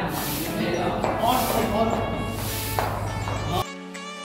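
Voices and general noise of people in a large hall, which cut off abruptly near the end as a clean instrumental music track begins.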